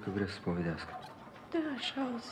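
Speech only: Romanian film dialogue, a question and then a reply.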